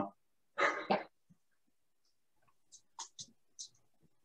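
A single spoken "yeah" over a video-call microphone, then a pause with a few faint, short, hissy sounds from a participant about three seconds in.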